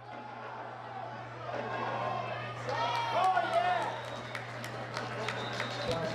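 Field-level ambient sound at a football game: distant voices of players and people on the sideline, with a couple of pitched shouts about halfway through. A steady low hum runs underneath, and scattered sharp clicks come in the second half.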